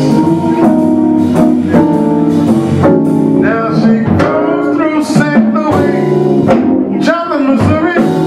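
Live blues-jazz band: a male baritone voice singing over organ, hollow-body electric guitar and drum kit, with sustained organ chords and a steady drum beat.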